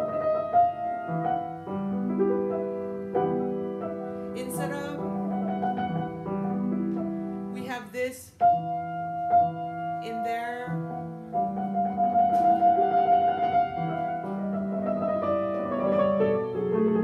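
Grand piano playing a slow, quiet passage of held chords and melody notes. Single notes trill rapidly against their upper neighbour a half step away, with one long trilled high note in the second half.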